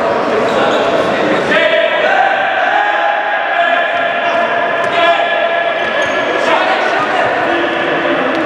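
A futsal ball being kicked and bouncing on a sports-hall floor, under the shouts and calls of players and spectators ringing through the large hall.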